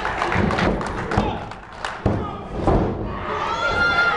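Thuds of wrestlers' bodies and feet hitting the wrestling ring's canvas-covered mat, several in quick succession over the first two seconds and another shortly before three seconds.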